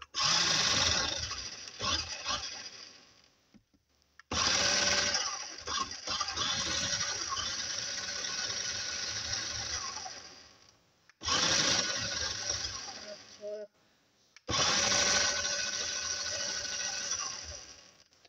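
Small electric motor of a toy LEGO car whirring in four separate runs. Each run starts suddenly, fades over two to six seconds, then cuts off.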